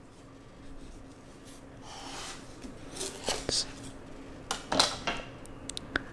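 Knife cutting through a firm melon's netted rind on a cutting board: quiet at first, then scraping strokes and a few short clicks in the second half as the melon comes apart into halves.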